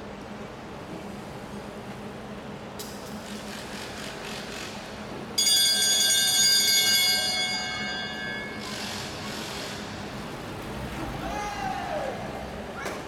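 A velodrome lap bell rings suddenly about five seconds in, loud for about two seconds, then dies away over the next second or so. Underneath is a steady low background.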